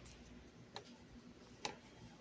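Near silence with three faint, short clicks spaced roughly a second apart, the last one a little louder.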